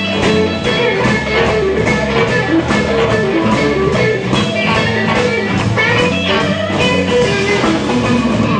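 Live blues band playing an instrumental passage: guitar over bass and a drum kit keeping a steady beat.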